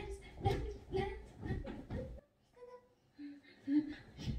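Short, high-pitched wordless vocal sounds, like a baby babbling and a woman cooing, broken by a pause of about a second midway.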